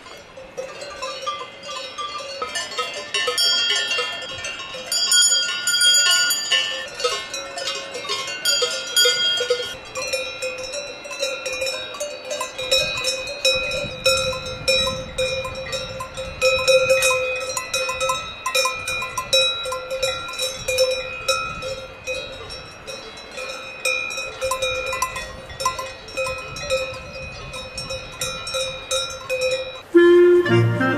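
Cowbells clanking irregularly on grazing cows: several bells of different pitch at first, then from about a third of the way in one bell close by ringing out with each movement of the animal.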